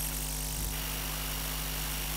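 Steady low electrical hum with a faint hiss from a public-address microphone system, with no voice on it.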